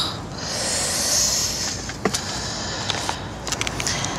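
A person's short exclamation, "akh", drawn out into a long, hissy, exasperated exhale lasting over a second, followed by a few faint clicks.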